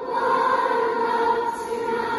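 Massed children's school choir singing with an orchestra, holding long, steady notes.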